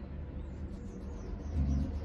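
A steady low background rumble, swelling briefly near the end.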